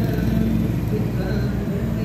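Street noise: steady traffic with indistinct voices of people nearby.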